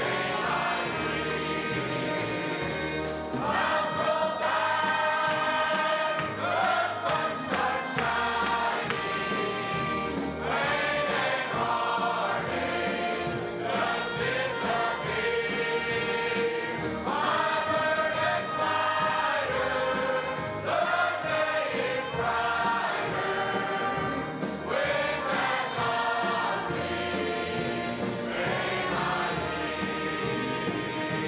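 Large mixed choir of men and women singing a gospel hymn in phrases of long held notes.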